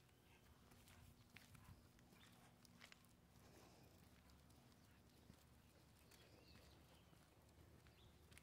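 Near silence, with faint footsteps and scattered light clicks on a paved path as dogs are walked on leashes.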